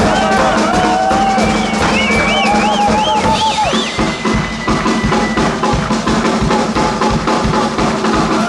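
Two drum kits played together in a live drum duet: fast, dense kick-drum, snare and cymbal hits. Over the first half a high wavering pitched sound glides up and down above the drums, stopping about four seconds in.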